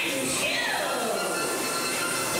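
Dark ride show soundtrack: a long sliding tone falls steadily in pitch for about a second and a half, over the ride's music and voices.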